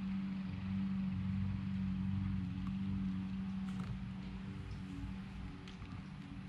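A steady low hum, as of a motor or machine running, easing off somewhat after about four seconds, with a few faint clicks partway through.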